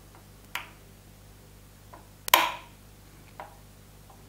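Small plastic two-way (SPDT) wall switches being flipped one after another, each giving a sharp click: a clear click about half a second in, the loudest a little past halfway with a short ring after it, and fainter clicks between. Each flip passes the light on to the next bulb in the godown wiring circuit.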